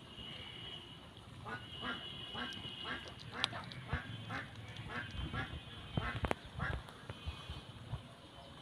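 An animal calling in a quick, even series of about fifteen short calls, roughly three a second, starting about a second and a half in, over a steady high tone. A few sharp clicks come near the end of the calls.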